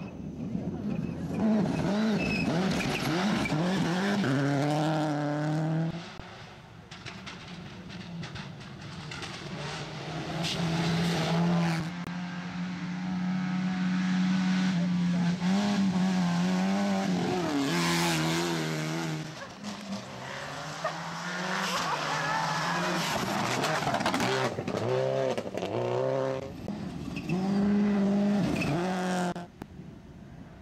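Rally cars at full throttle passing close one after another, four loud passes in all. The engine note of each climbs and drops sharply through gear changes as it goes by.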